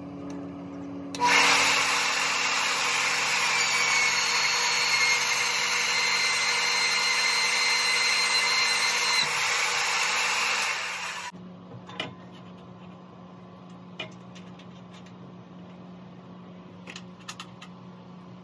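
Magnetic-base drill boring into the steel column of a shop press: the motor runs at first, then the bit bites and cuts steel loudly with a high-pitched whine for about ten seconds before stopping suddenly. A lower steady hum follows, with a few sharp clicks.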